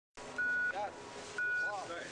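Electronic start-gate countdown timer beeping twice, one steady high tone about a second apart, counting the racer down to the start.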